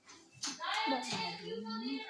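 A child's voice making a drawn-out wordless vocal sound whose pitch bends up and down, over hands handling paper on a table, with a sharp tap about half a second in.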